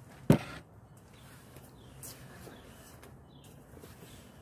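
A single sharp knock about a third of a second in, with a short ringing tail, then low, quiet background.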